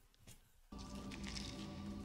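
Near silence, then about 0.7 s in a movie soundtrack cuts in: faint, sustained music with a steady low note and several held higher tones.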